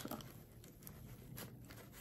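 Faint rustling of a paper towel rubbed around the tip of a tattoo needle cartridge, with a few small scratchy clicks.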